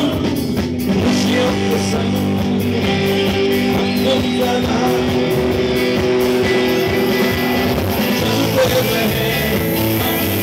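Live rock song played by a band, with electric guitar chords held and ringing over the backing.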